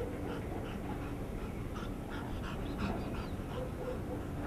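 Large dog panting in quick, regular breaths, with a faint high whine about three seconds in.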